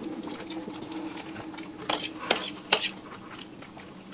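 Metal forks scraping and clinking against plates as noodles are twirled and eaten, with a few sharp clinks about two seconds in, over a low steady hum.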